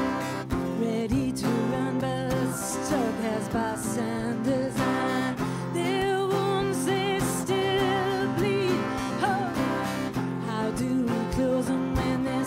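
A woman singing over a strummed acoustic guitar, her voice wavering in long held notes in the second half.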